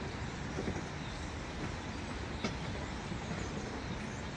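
Steady outdoor background noise, heaviest in the low end, with one sharp click about halfway through.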